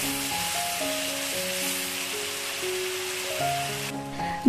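Background music with a slow, held-note melody over the steady sizzle of ground chili paste frying in oil in a pan.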